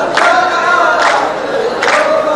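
A row of men chanting a verse together in unison, with a loud hand clap from the whole row three times, just under a second apart.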